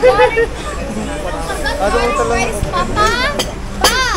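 Voices of children and adults talking over a background of restaurant chatter, with a short sharp knock near the end.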